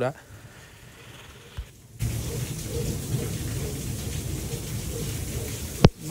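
Steady heavy rain, an even hiss that starts abruptly about two seconds in after a quieter stretch. A sharp click comes just before the end.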